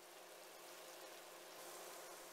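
Faint, steady sizzle of tofu slices frying in oil in a pan.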